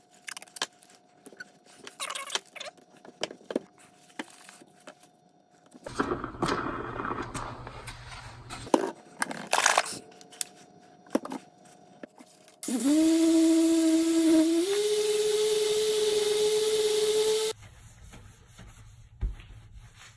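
Scattered clicks and scraping as masking tape is pulled and the plate is handled. Then, about 13 seconds in, a dual-action polisher motor starts with a rising whine and runs loudly on the aluminium plate for about five seconds. Its pitch steps up partway through before it cuts off.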